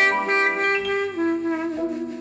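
Jazz ballad recording: a clarinet plays a slow melody of long held notes, stepping down to a lower note about a second in.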